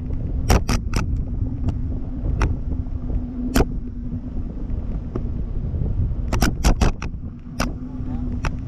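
Wind buffeting the microphone of a camera slung under a parasail, a steady low rumble with a faint steady hum beneath it. Sharp irregular clicks cut through, in a quick cluster about half a second in and another just after six seconds.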